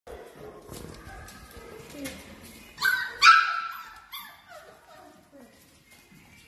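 Bernese Mountain Dog puppies play-fighting: two sharp, high yips about three seconds in, then a string of shorter, falling whines and yelps that fade out.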